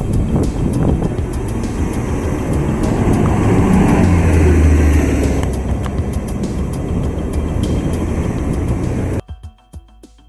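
Street traffic at an intersection: a city bus and passing cars, with a deep engine rumble that swells to its loudest about four to five seconds in. About nine seconds in the traffic sound cuts off suddenly, and soft music takes over.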